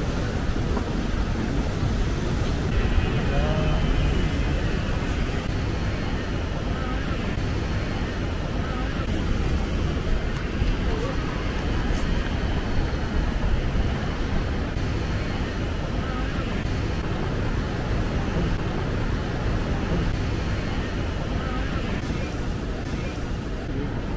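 Steady outdoor wash of sea surf breaking on rocks, mixed with wind on the microphone, with faint voices of people nearby.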